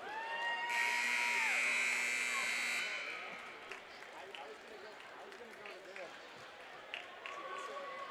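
Ice rink's scoreboard horn sounding the end of a timeout: a steady tone joined by a harsher buzz, about three seconds in all. After it comes low crowd chatter with a few faint knocks.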